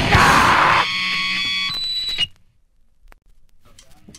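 Loud distorted band music that stops about a second in and leaves a sustained ringing chord of steady tones. That chord cuts off abruptly about two seconds in, and a quiet gap between tracks follows, with faint stray sounds near the end.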